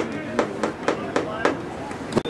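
Hand claps in a steady run of about four a second, with voices behind them.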